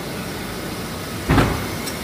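Nissan Sentra idling steadily in a parking garage, with a single dull thump about one and a half seconds in.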